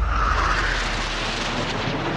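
Loud, even roaring noise from an NFL highlight film's soundtrack, with a deep rumble that fades out within the first second.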